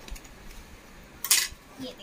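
Cardboard takeaway burger box being opened on a glass-topped table, with one short, sharp clatter a little past halfway.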